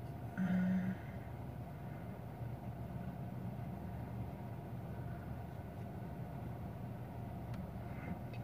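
Steady low hum inside a parked car's cabin: the car idling with its air conditioner running.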